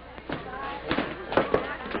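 A scuffle between several men grappling: a few sharp knocks and thuds over faint background voices.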